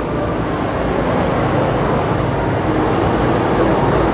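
Loud, steady rumbling noise spread across low and high pitches, with faint sustained tones underneath.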